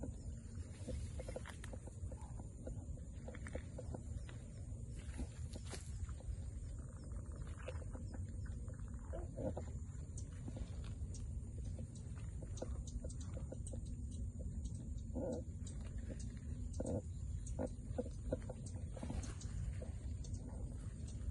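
Outdoor field ambience: a steady low rumble of wind or handling on the microphone under a faint, steady high-pitched insect drone. Short animal calls come now and then, mostly in the second half, among light clicks and rustles.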